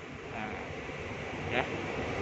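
Inside the car of a KRL Commuter Line electric train, a steady running rumble that grows gradually louder.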